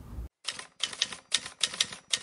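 Typewriter keystroke sound effect: quick runs of sharp key clacks in short clusters, keeping time with on-screen text being typed out.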